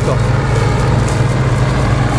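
Bizon combine harvester's diesel engine and threshing gear running with a steady drone, working hard under the load of a heavy rye crop.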